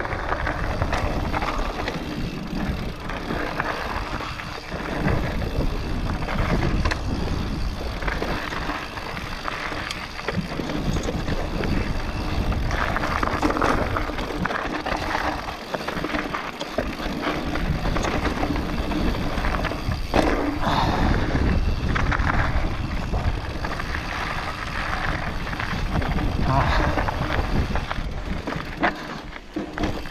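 Mountain bike riding down a dirt singletrack: tyres rolling and crackling over dirt and stones, with the bike rattling over the bumps and wind on the helmet camera's microphone.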